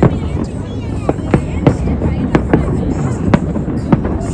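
Aerial firework shells bursting: a string of sharp bangs at uneven intervals, about two a second, over a steady low rumble.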